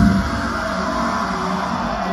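Live heavy metal band through a festival PA: about a quarter second in, the drums and bass drop out, leaving a steady, held sound from the band during a break in the song.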